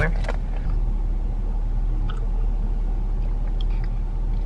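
Steady low rumble of a Chevrolet car's engine idling, heard from inside the cabin.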